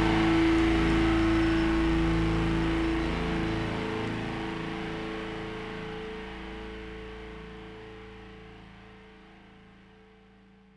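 A live rock band's last chord of electric guitar and bass rings out from the amplifiers as several steady held tones. The strongest note drops out about three seconds in, and the whole chord fades steadily until it is faint.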